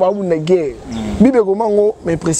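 A man speaking, his pitch rising and falling, with a brief pause about halfway through.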